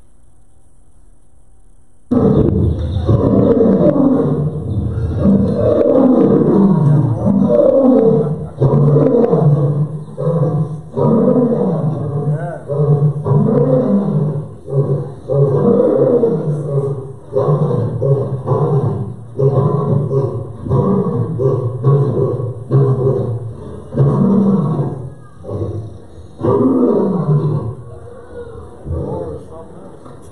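A lion roaring: a bout that starts about two seconds in with long, loud roars, then goes on as a run of shorter grunting roars about a second apart.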